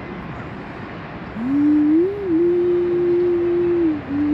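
A distant call to prayer carried over the city: one voice holding long, slowly gliding notes, coming in about a second and a half in and rising once before a long held note. Underneath is a steady hiss of city noise.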